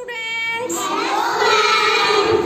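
A group of young children calling out together in unison, a drawn-out sing-song chorus of voices.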